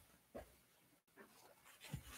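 Near silence with faint handling sounds at an altar: a soft knock about half a second in, then light rustling near the end as the altar cloth and glass cruets are handled.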